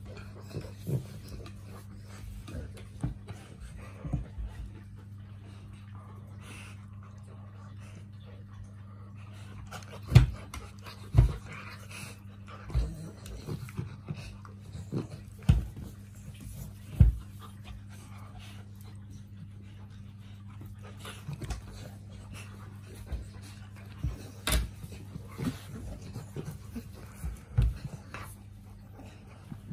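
A St Bernard and a chow chow puppy wrestling: panting and scuffling, broken by sharp knocks at uneven intervals, a cluster of louder ones in the middle. A steady low hum sits underneath.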